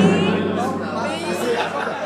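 People's voices talking and chattering over live microphones in a room, quieter than the singing around it, with no music playing.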